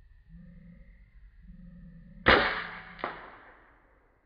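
A PCP air rifle, a Bocap bullpup 360cc firing a slug, fires once about two seconds in: a sharp report that fades over about a second. A second, smaller sharp crack follows less than a second later.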